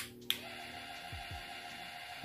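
Battery-powered facial cleansing brush switched on at its first setting: a button click, then the small motor starts about a third of a second in and runs with a steady hum as the brush head spins.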